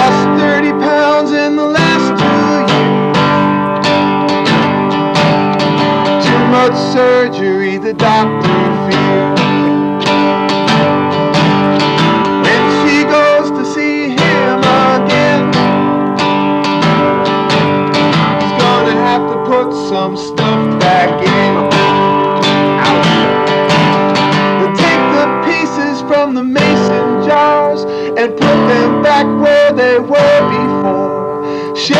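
Steel-string acoustic guitar strummed in a steady rhythm, an instrumental passage between verses of a folk song, the chords changing every few seconds.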